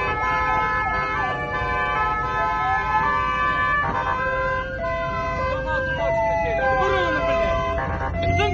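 A siren wailing, its pitch sweeping slowly up and then down, over a jumble of steady tones that change pitch every half second or so.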